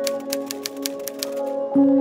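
Typewriter key strikes as a sound effect, a quick run of about ten clacks that stops about a second and a half in. They sit over soft, sustained ambient music, which shifts to a new low chord near the end.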